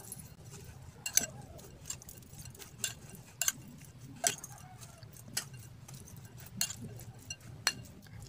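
Anchovies being mixed by hand in a glass bowl with their seasoning: scattered light clicks, about one a second, of fish and fingers against the glass, over a faint low hum.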